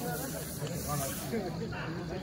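Indistinct distant voices over a steady high hiss, which is brighter for the first second or so.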